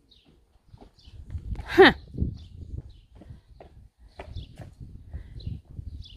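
Footsteps on a cobblestone pavement with a low rumble from walking. About two seconds in there is one short call that falls steeply in pitch.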